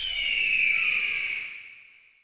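Short electronic logo sting: a high, shimmering tone that glides slightly downward and fades out near the end.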